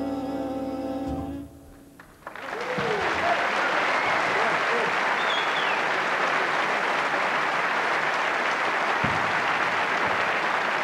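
Jazz big band holding its final chord, which cuts off about a second in. After a brief pause, a large audience starts applauding, with a few whoops and whistles, and the applause carries on steadily.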